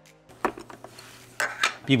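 A few light plastic clicks and knocks as a plastic projector is handled and set down on a tabletop, with the loudest knocks coming about a second and a half in.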